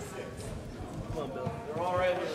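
Indistinct chatter of several men's voices in a crowded room, one voice coming through louder near the end.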